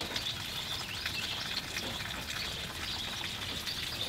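Pouring rain falling steadily on a yard and wet pavement: an even hiss with no rise or fall.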